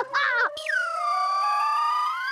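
Electronic comedy sound-effect sting, theremin-like: about half a second in, a bright tone swoops down and holds steady, then swoops up again near the end, over a lower tone that climbs slowly throughout.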